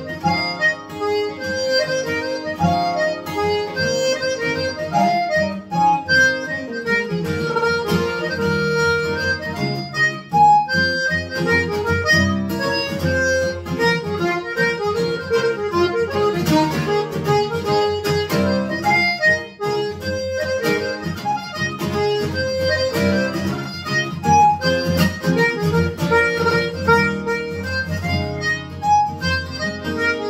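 Button accordion playing a waltz melody over acoustic guitar chords in waltz time.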